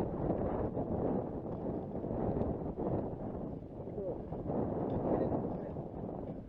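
Wind buffeting the microphone outdoors, a steady low rush, with faint voices briefly in the background about four and five seconds in.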